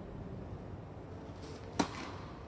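A single sharp pop of a tennis ball struck by a racket about 1.8 seconds in, over the low steady hum of an indoor hall.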